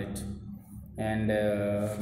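A man's voice, after a short pause, holding one long vowel at a level pitch for about a second, like a drawn-out 'aaa'.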